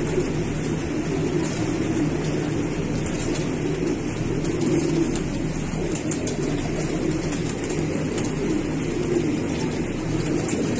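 Fancy pigeons cooing steadily in a loft.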